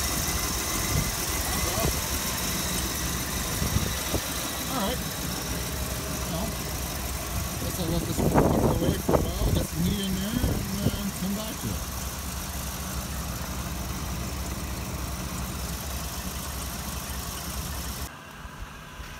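1985 Oldsmobile Delta 88's 307 V8 running at a steady high idle on the choke after a cold start, with a louder stretch of sound about halfway through.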